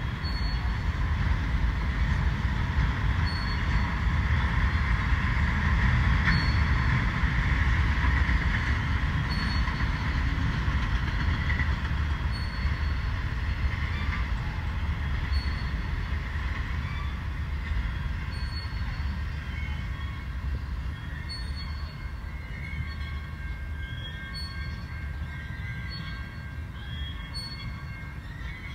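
BNSF freight train of enclosed autorack cars rolling past, a steady rumble of wheels on rail, fading as the last cars go by. Faint high squealing tones from the wheels come in during the second half.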